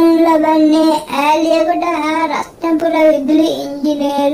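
A high voice singing or chanting a slow melody in long, held notes, with short breaths between phrases.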